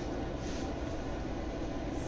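Steady background noise between words: an even low rumble with hiss, with no distinct event.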